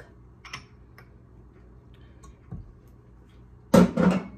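Powdered milk tipped from a small glass dish into a stainless steel mixer bowl, with only faint ticks and handling sounds. Near the end comes one loud, sharp clatter of kitchenware.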